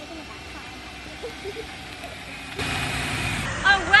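Faint distant voices, then from about two and a half seconds in, the steady low rumble of a car's engine running.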